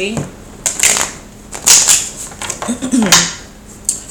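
Tarot cards being shuffled out of frame in several short rustling bursts, followed by a cough near the end.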